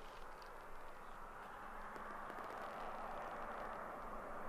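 Faint, steady outdoor hiss that slowly grows a little louder, with no distinct events.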